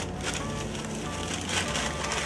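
Soft background music under the crinkle and rustle of white wrapping paper being folded around a sandwich by gloved hands.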